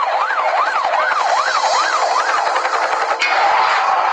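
Police car siren in a fast yelp, its pitch sweeping up and down about two and a half times a second. It cuts off suddenly about three seconds in, and a steady rushing noise takes over.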